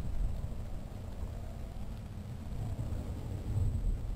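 Wind buffeting the microphone of a camera carried aloft on a weather balloon payload: a steady low rumble without a clear pitch.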